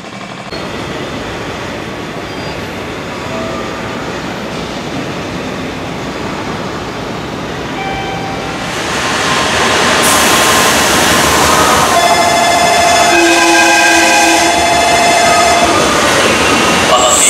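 A 700 series Shinkansen train arriving at a station platform. For about eight seconds there is only steady station background noise. Then the train's rush rises and turns loud, with several steady whining tones over it in the last few seconds.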